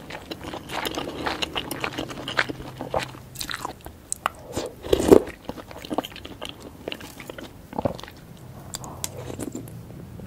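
Close-miked eating sounds: wet chewing and biting of soft eggs, cheese and noodles in spicy soup, with small clicks of chopsticks and a metal spoon in the bowl. There is one louder thump about five seconds in.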